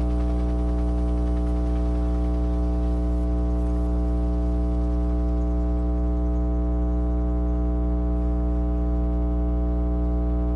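A steady synthesizer chord held without change, a sustained electronic drone of several notes.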